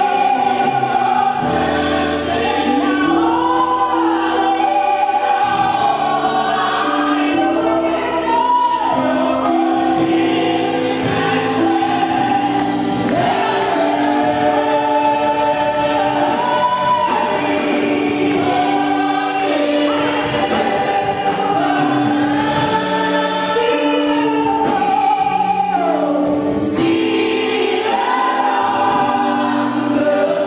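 Gospel praise-and-worship singing: a small group of women's voices singing together into microphones over sustained keyboard chords.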